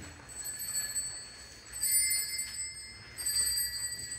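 Altar bells rung twice, about a second and a half apart, their several high tones ringing on between strikes. They mark the elevation of the bread and wine at the close of the Eucharistic Prayer.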